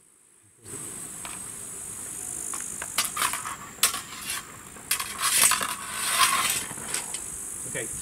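After a near-silent first moment, a steady high chirring of insects fills the background. From about three seconds in come several sharp clicks and short scraping sounds as steel swords and bucklers meet and bind.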